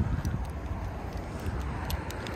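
Wind buffeting the microphone, an uneven low rumble, with light footsteps on pavement.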